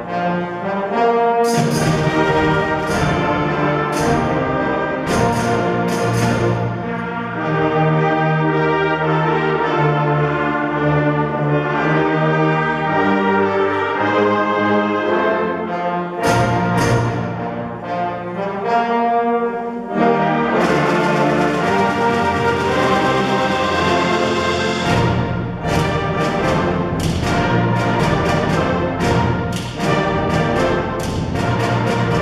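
A full concert band playing a brass-led arrangement with the trombone section featured, sustained chords under repeated percussion hits. A sustained cymbal wash comes in about two-thirds of the way through.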